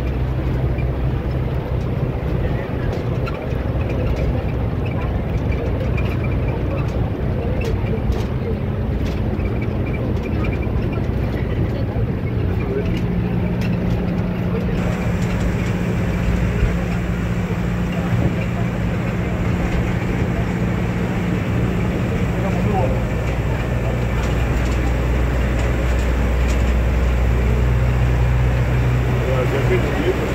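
Bus engine and road noise heard from inside the passenger cabin while driving: a steady low hum whose pitch shifts a little a few times, with passengers talking over it.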